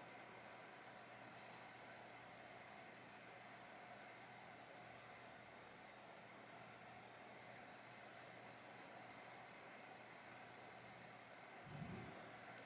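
Near silence: room tone with a faint steady hiss.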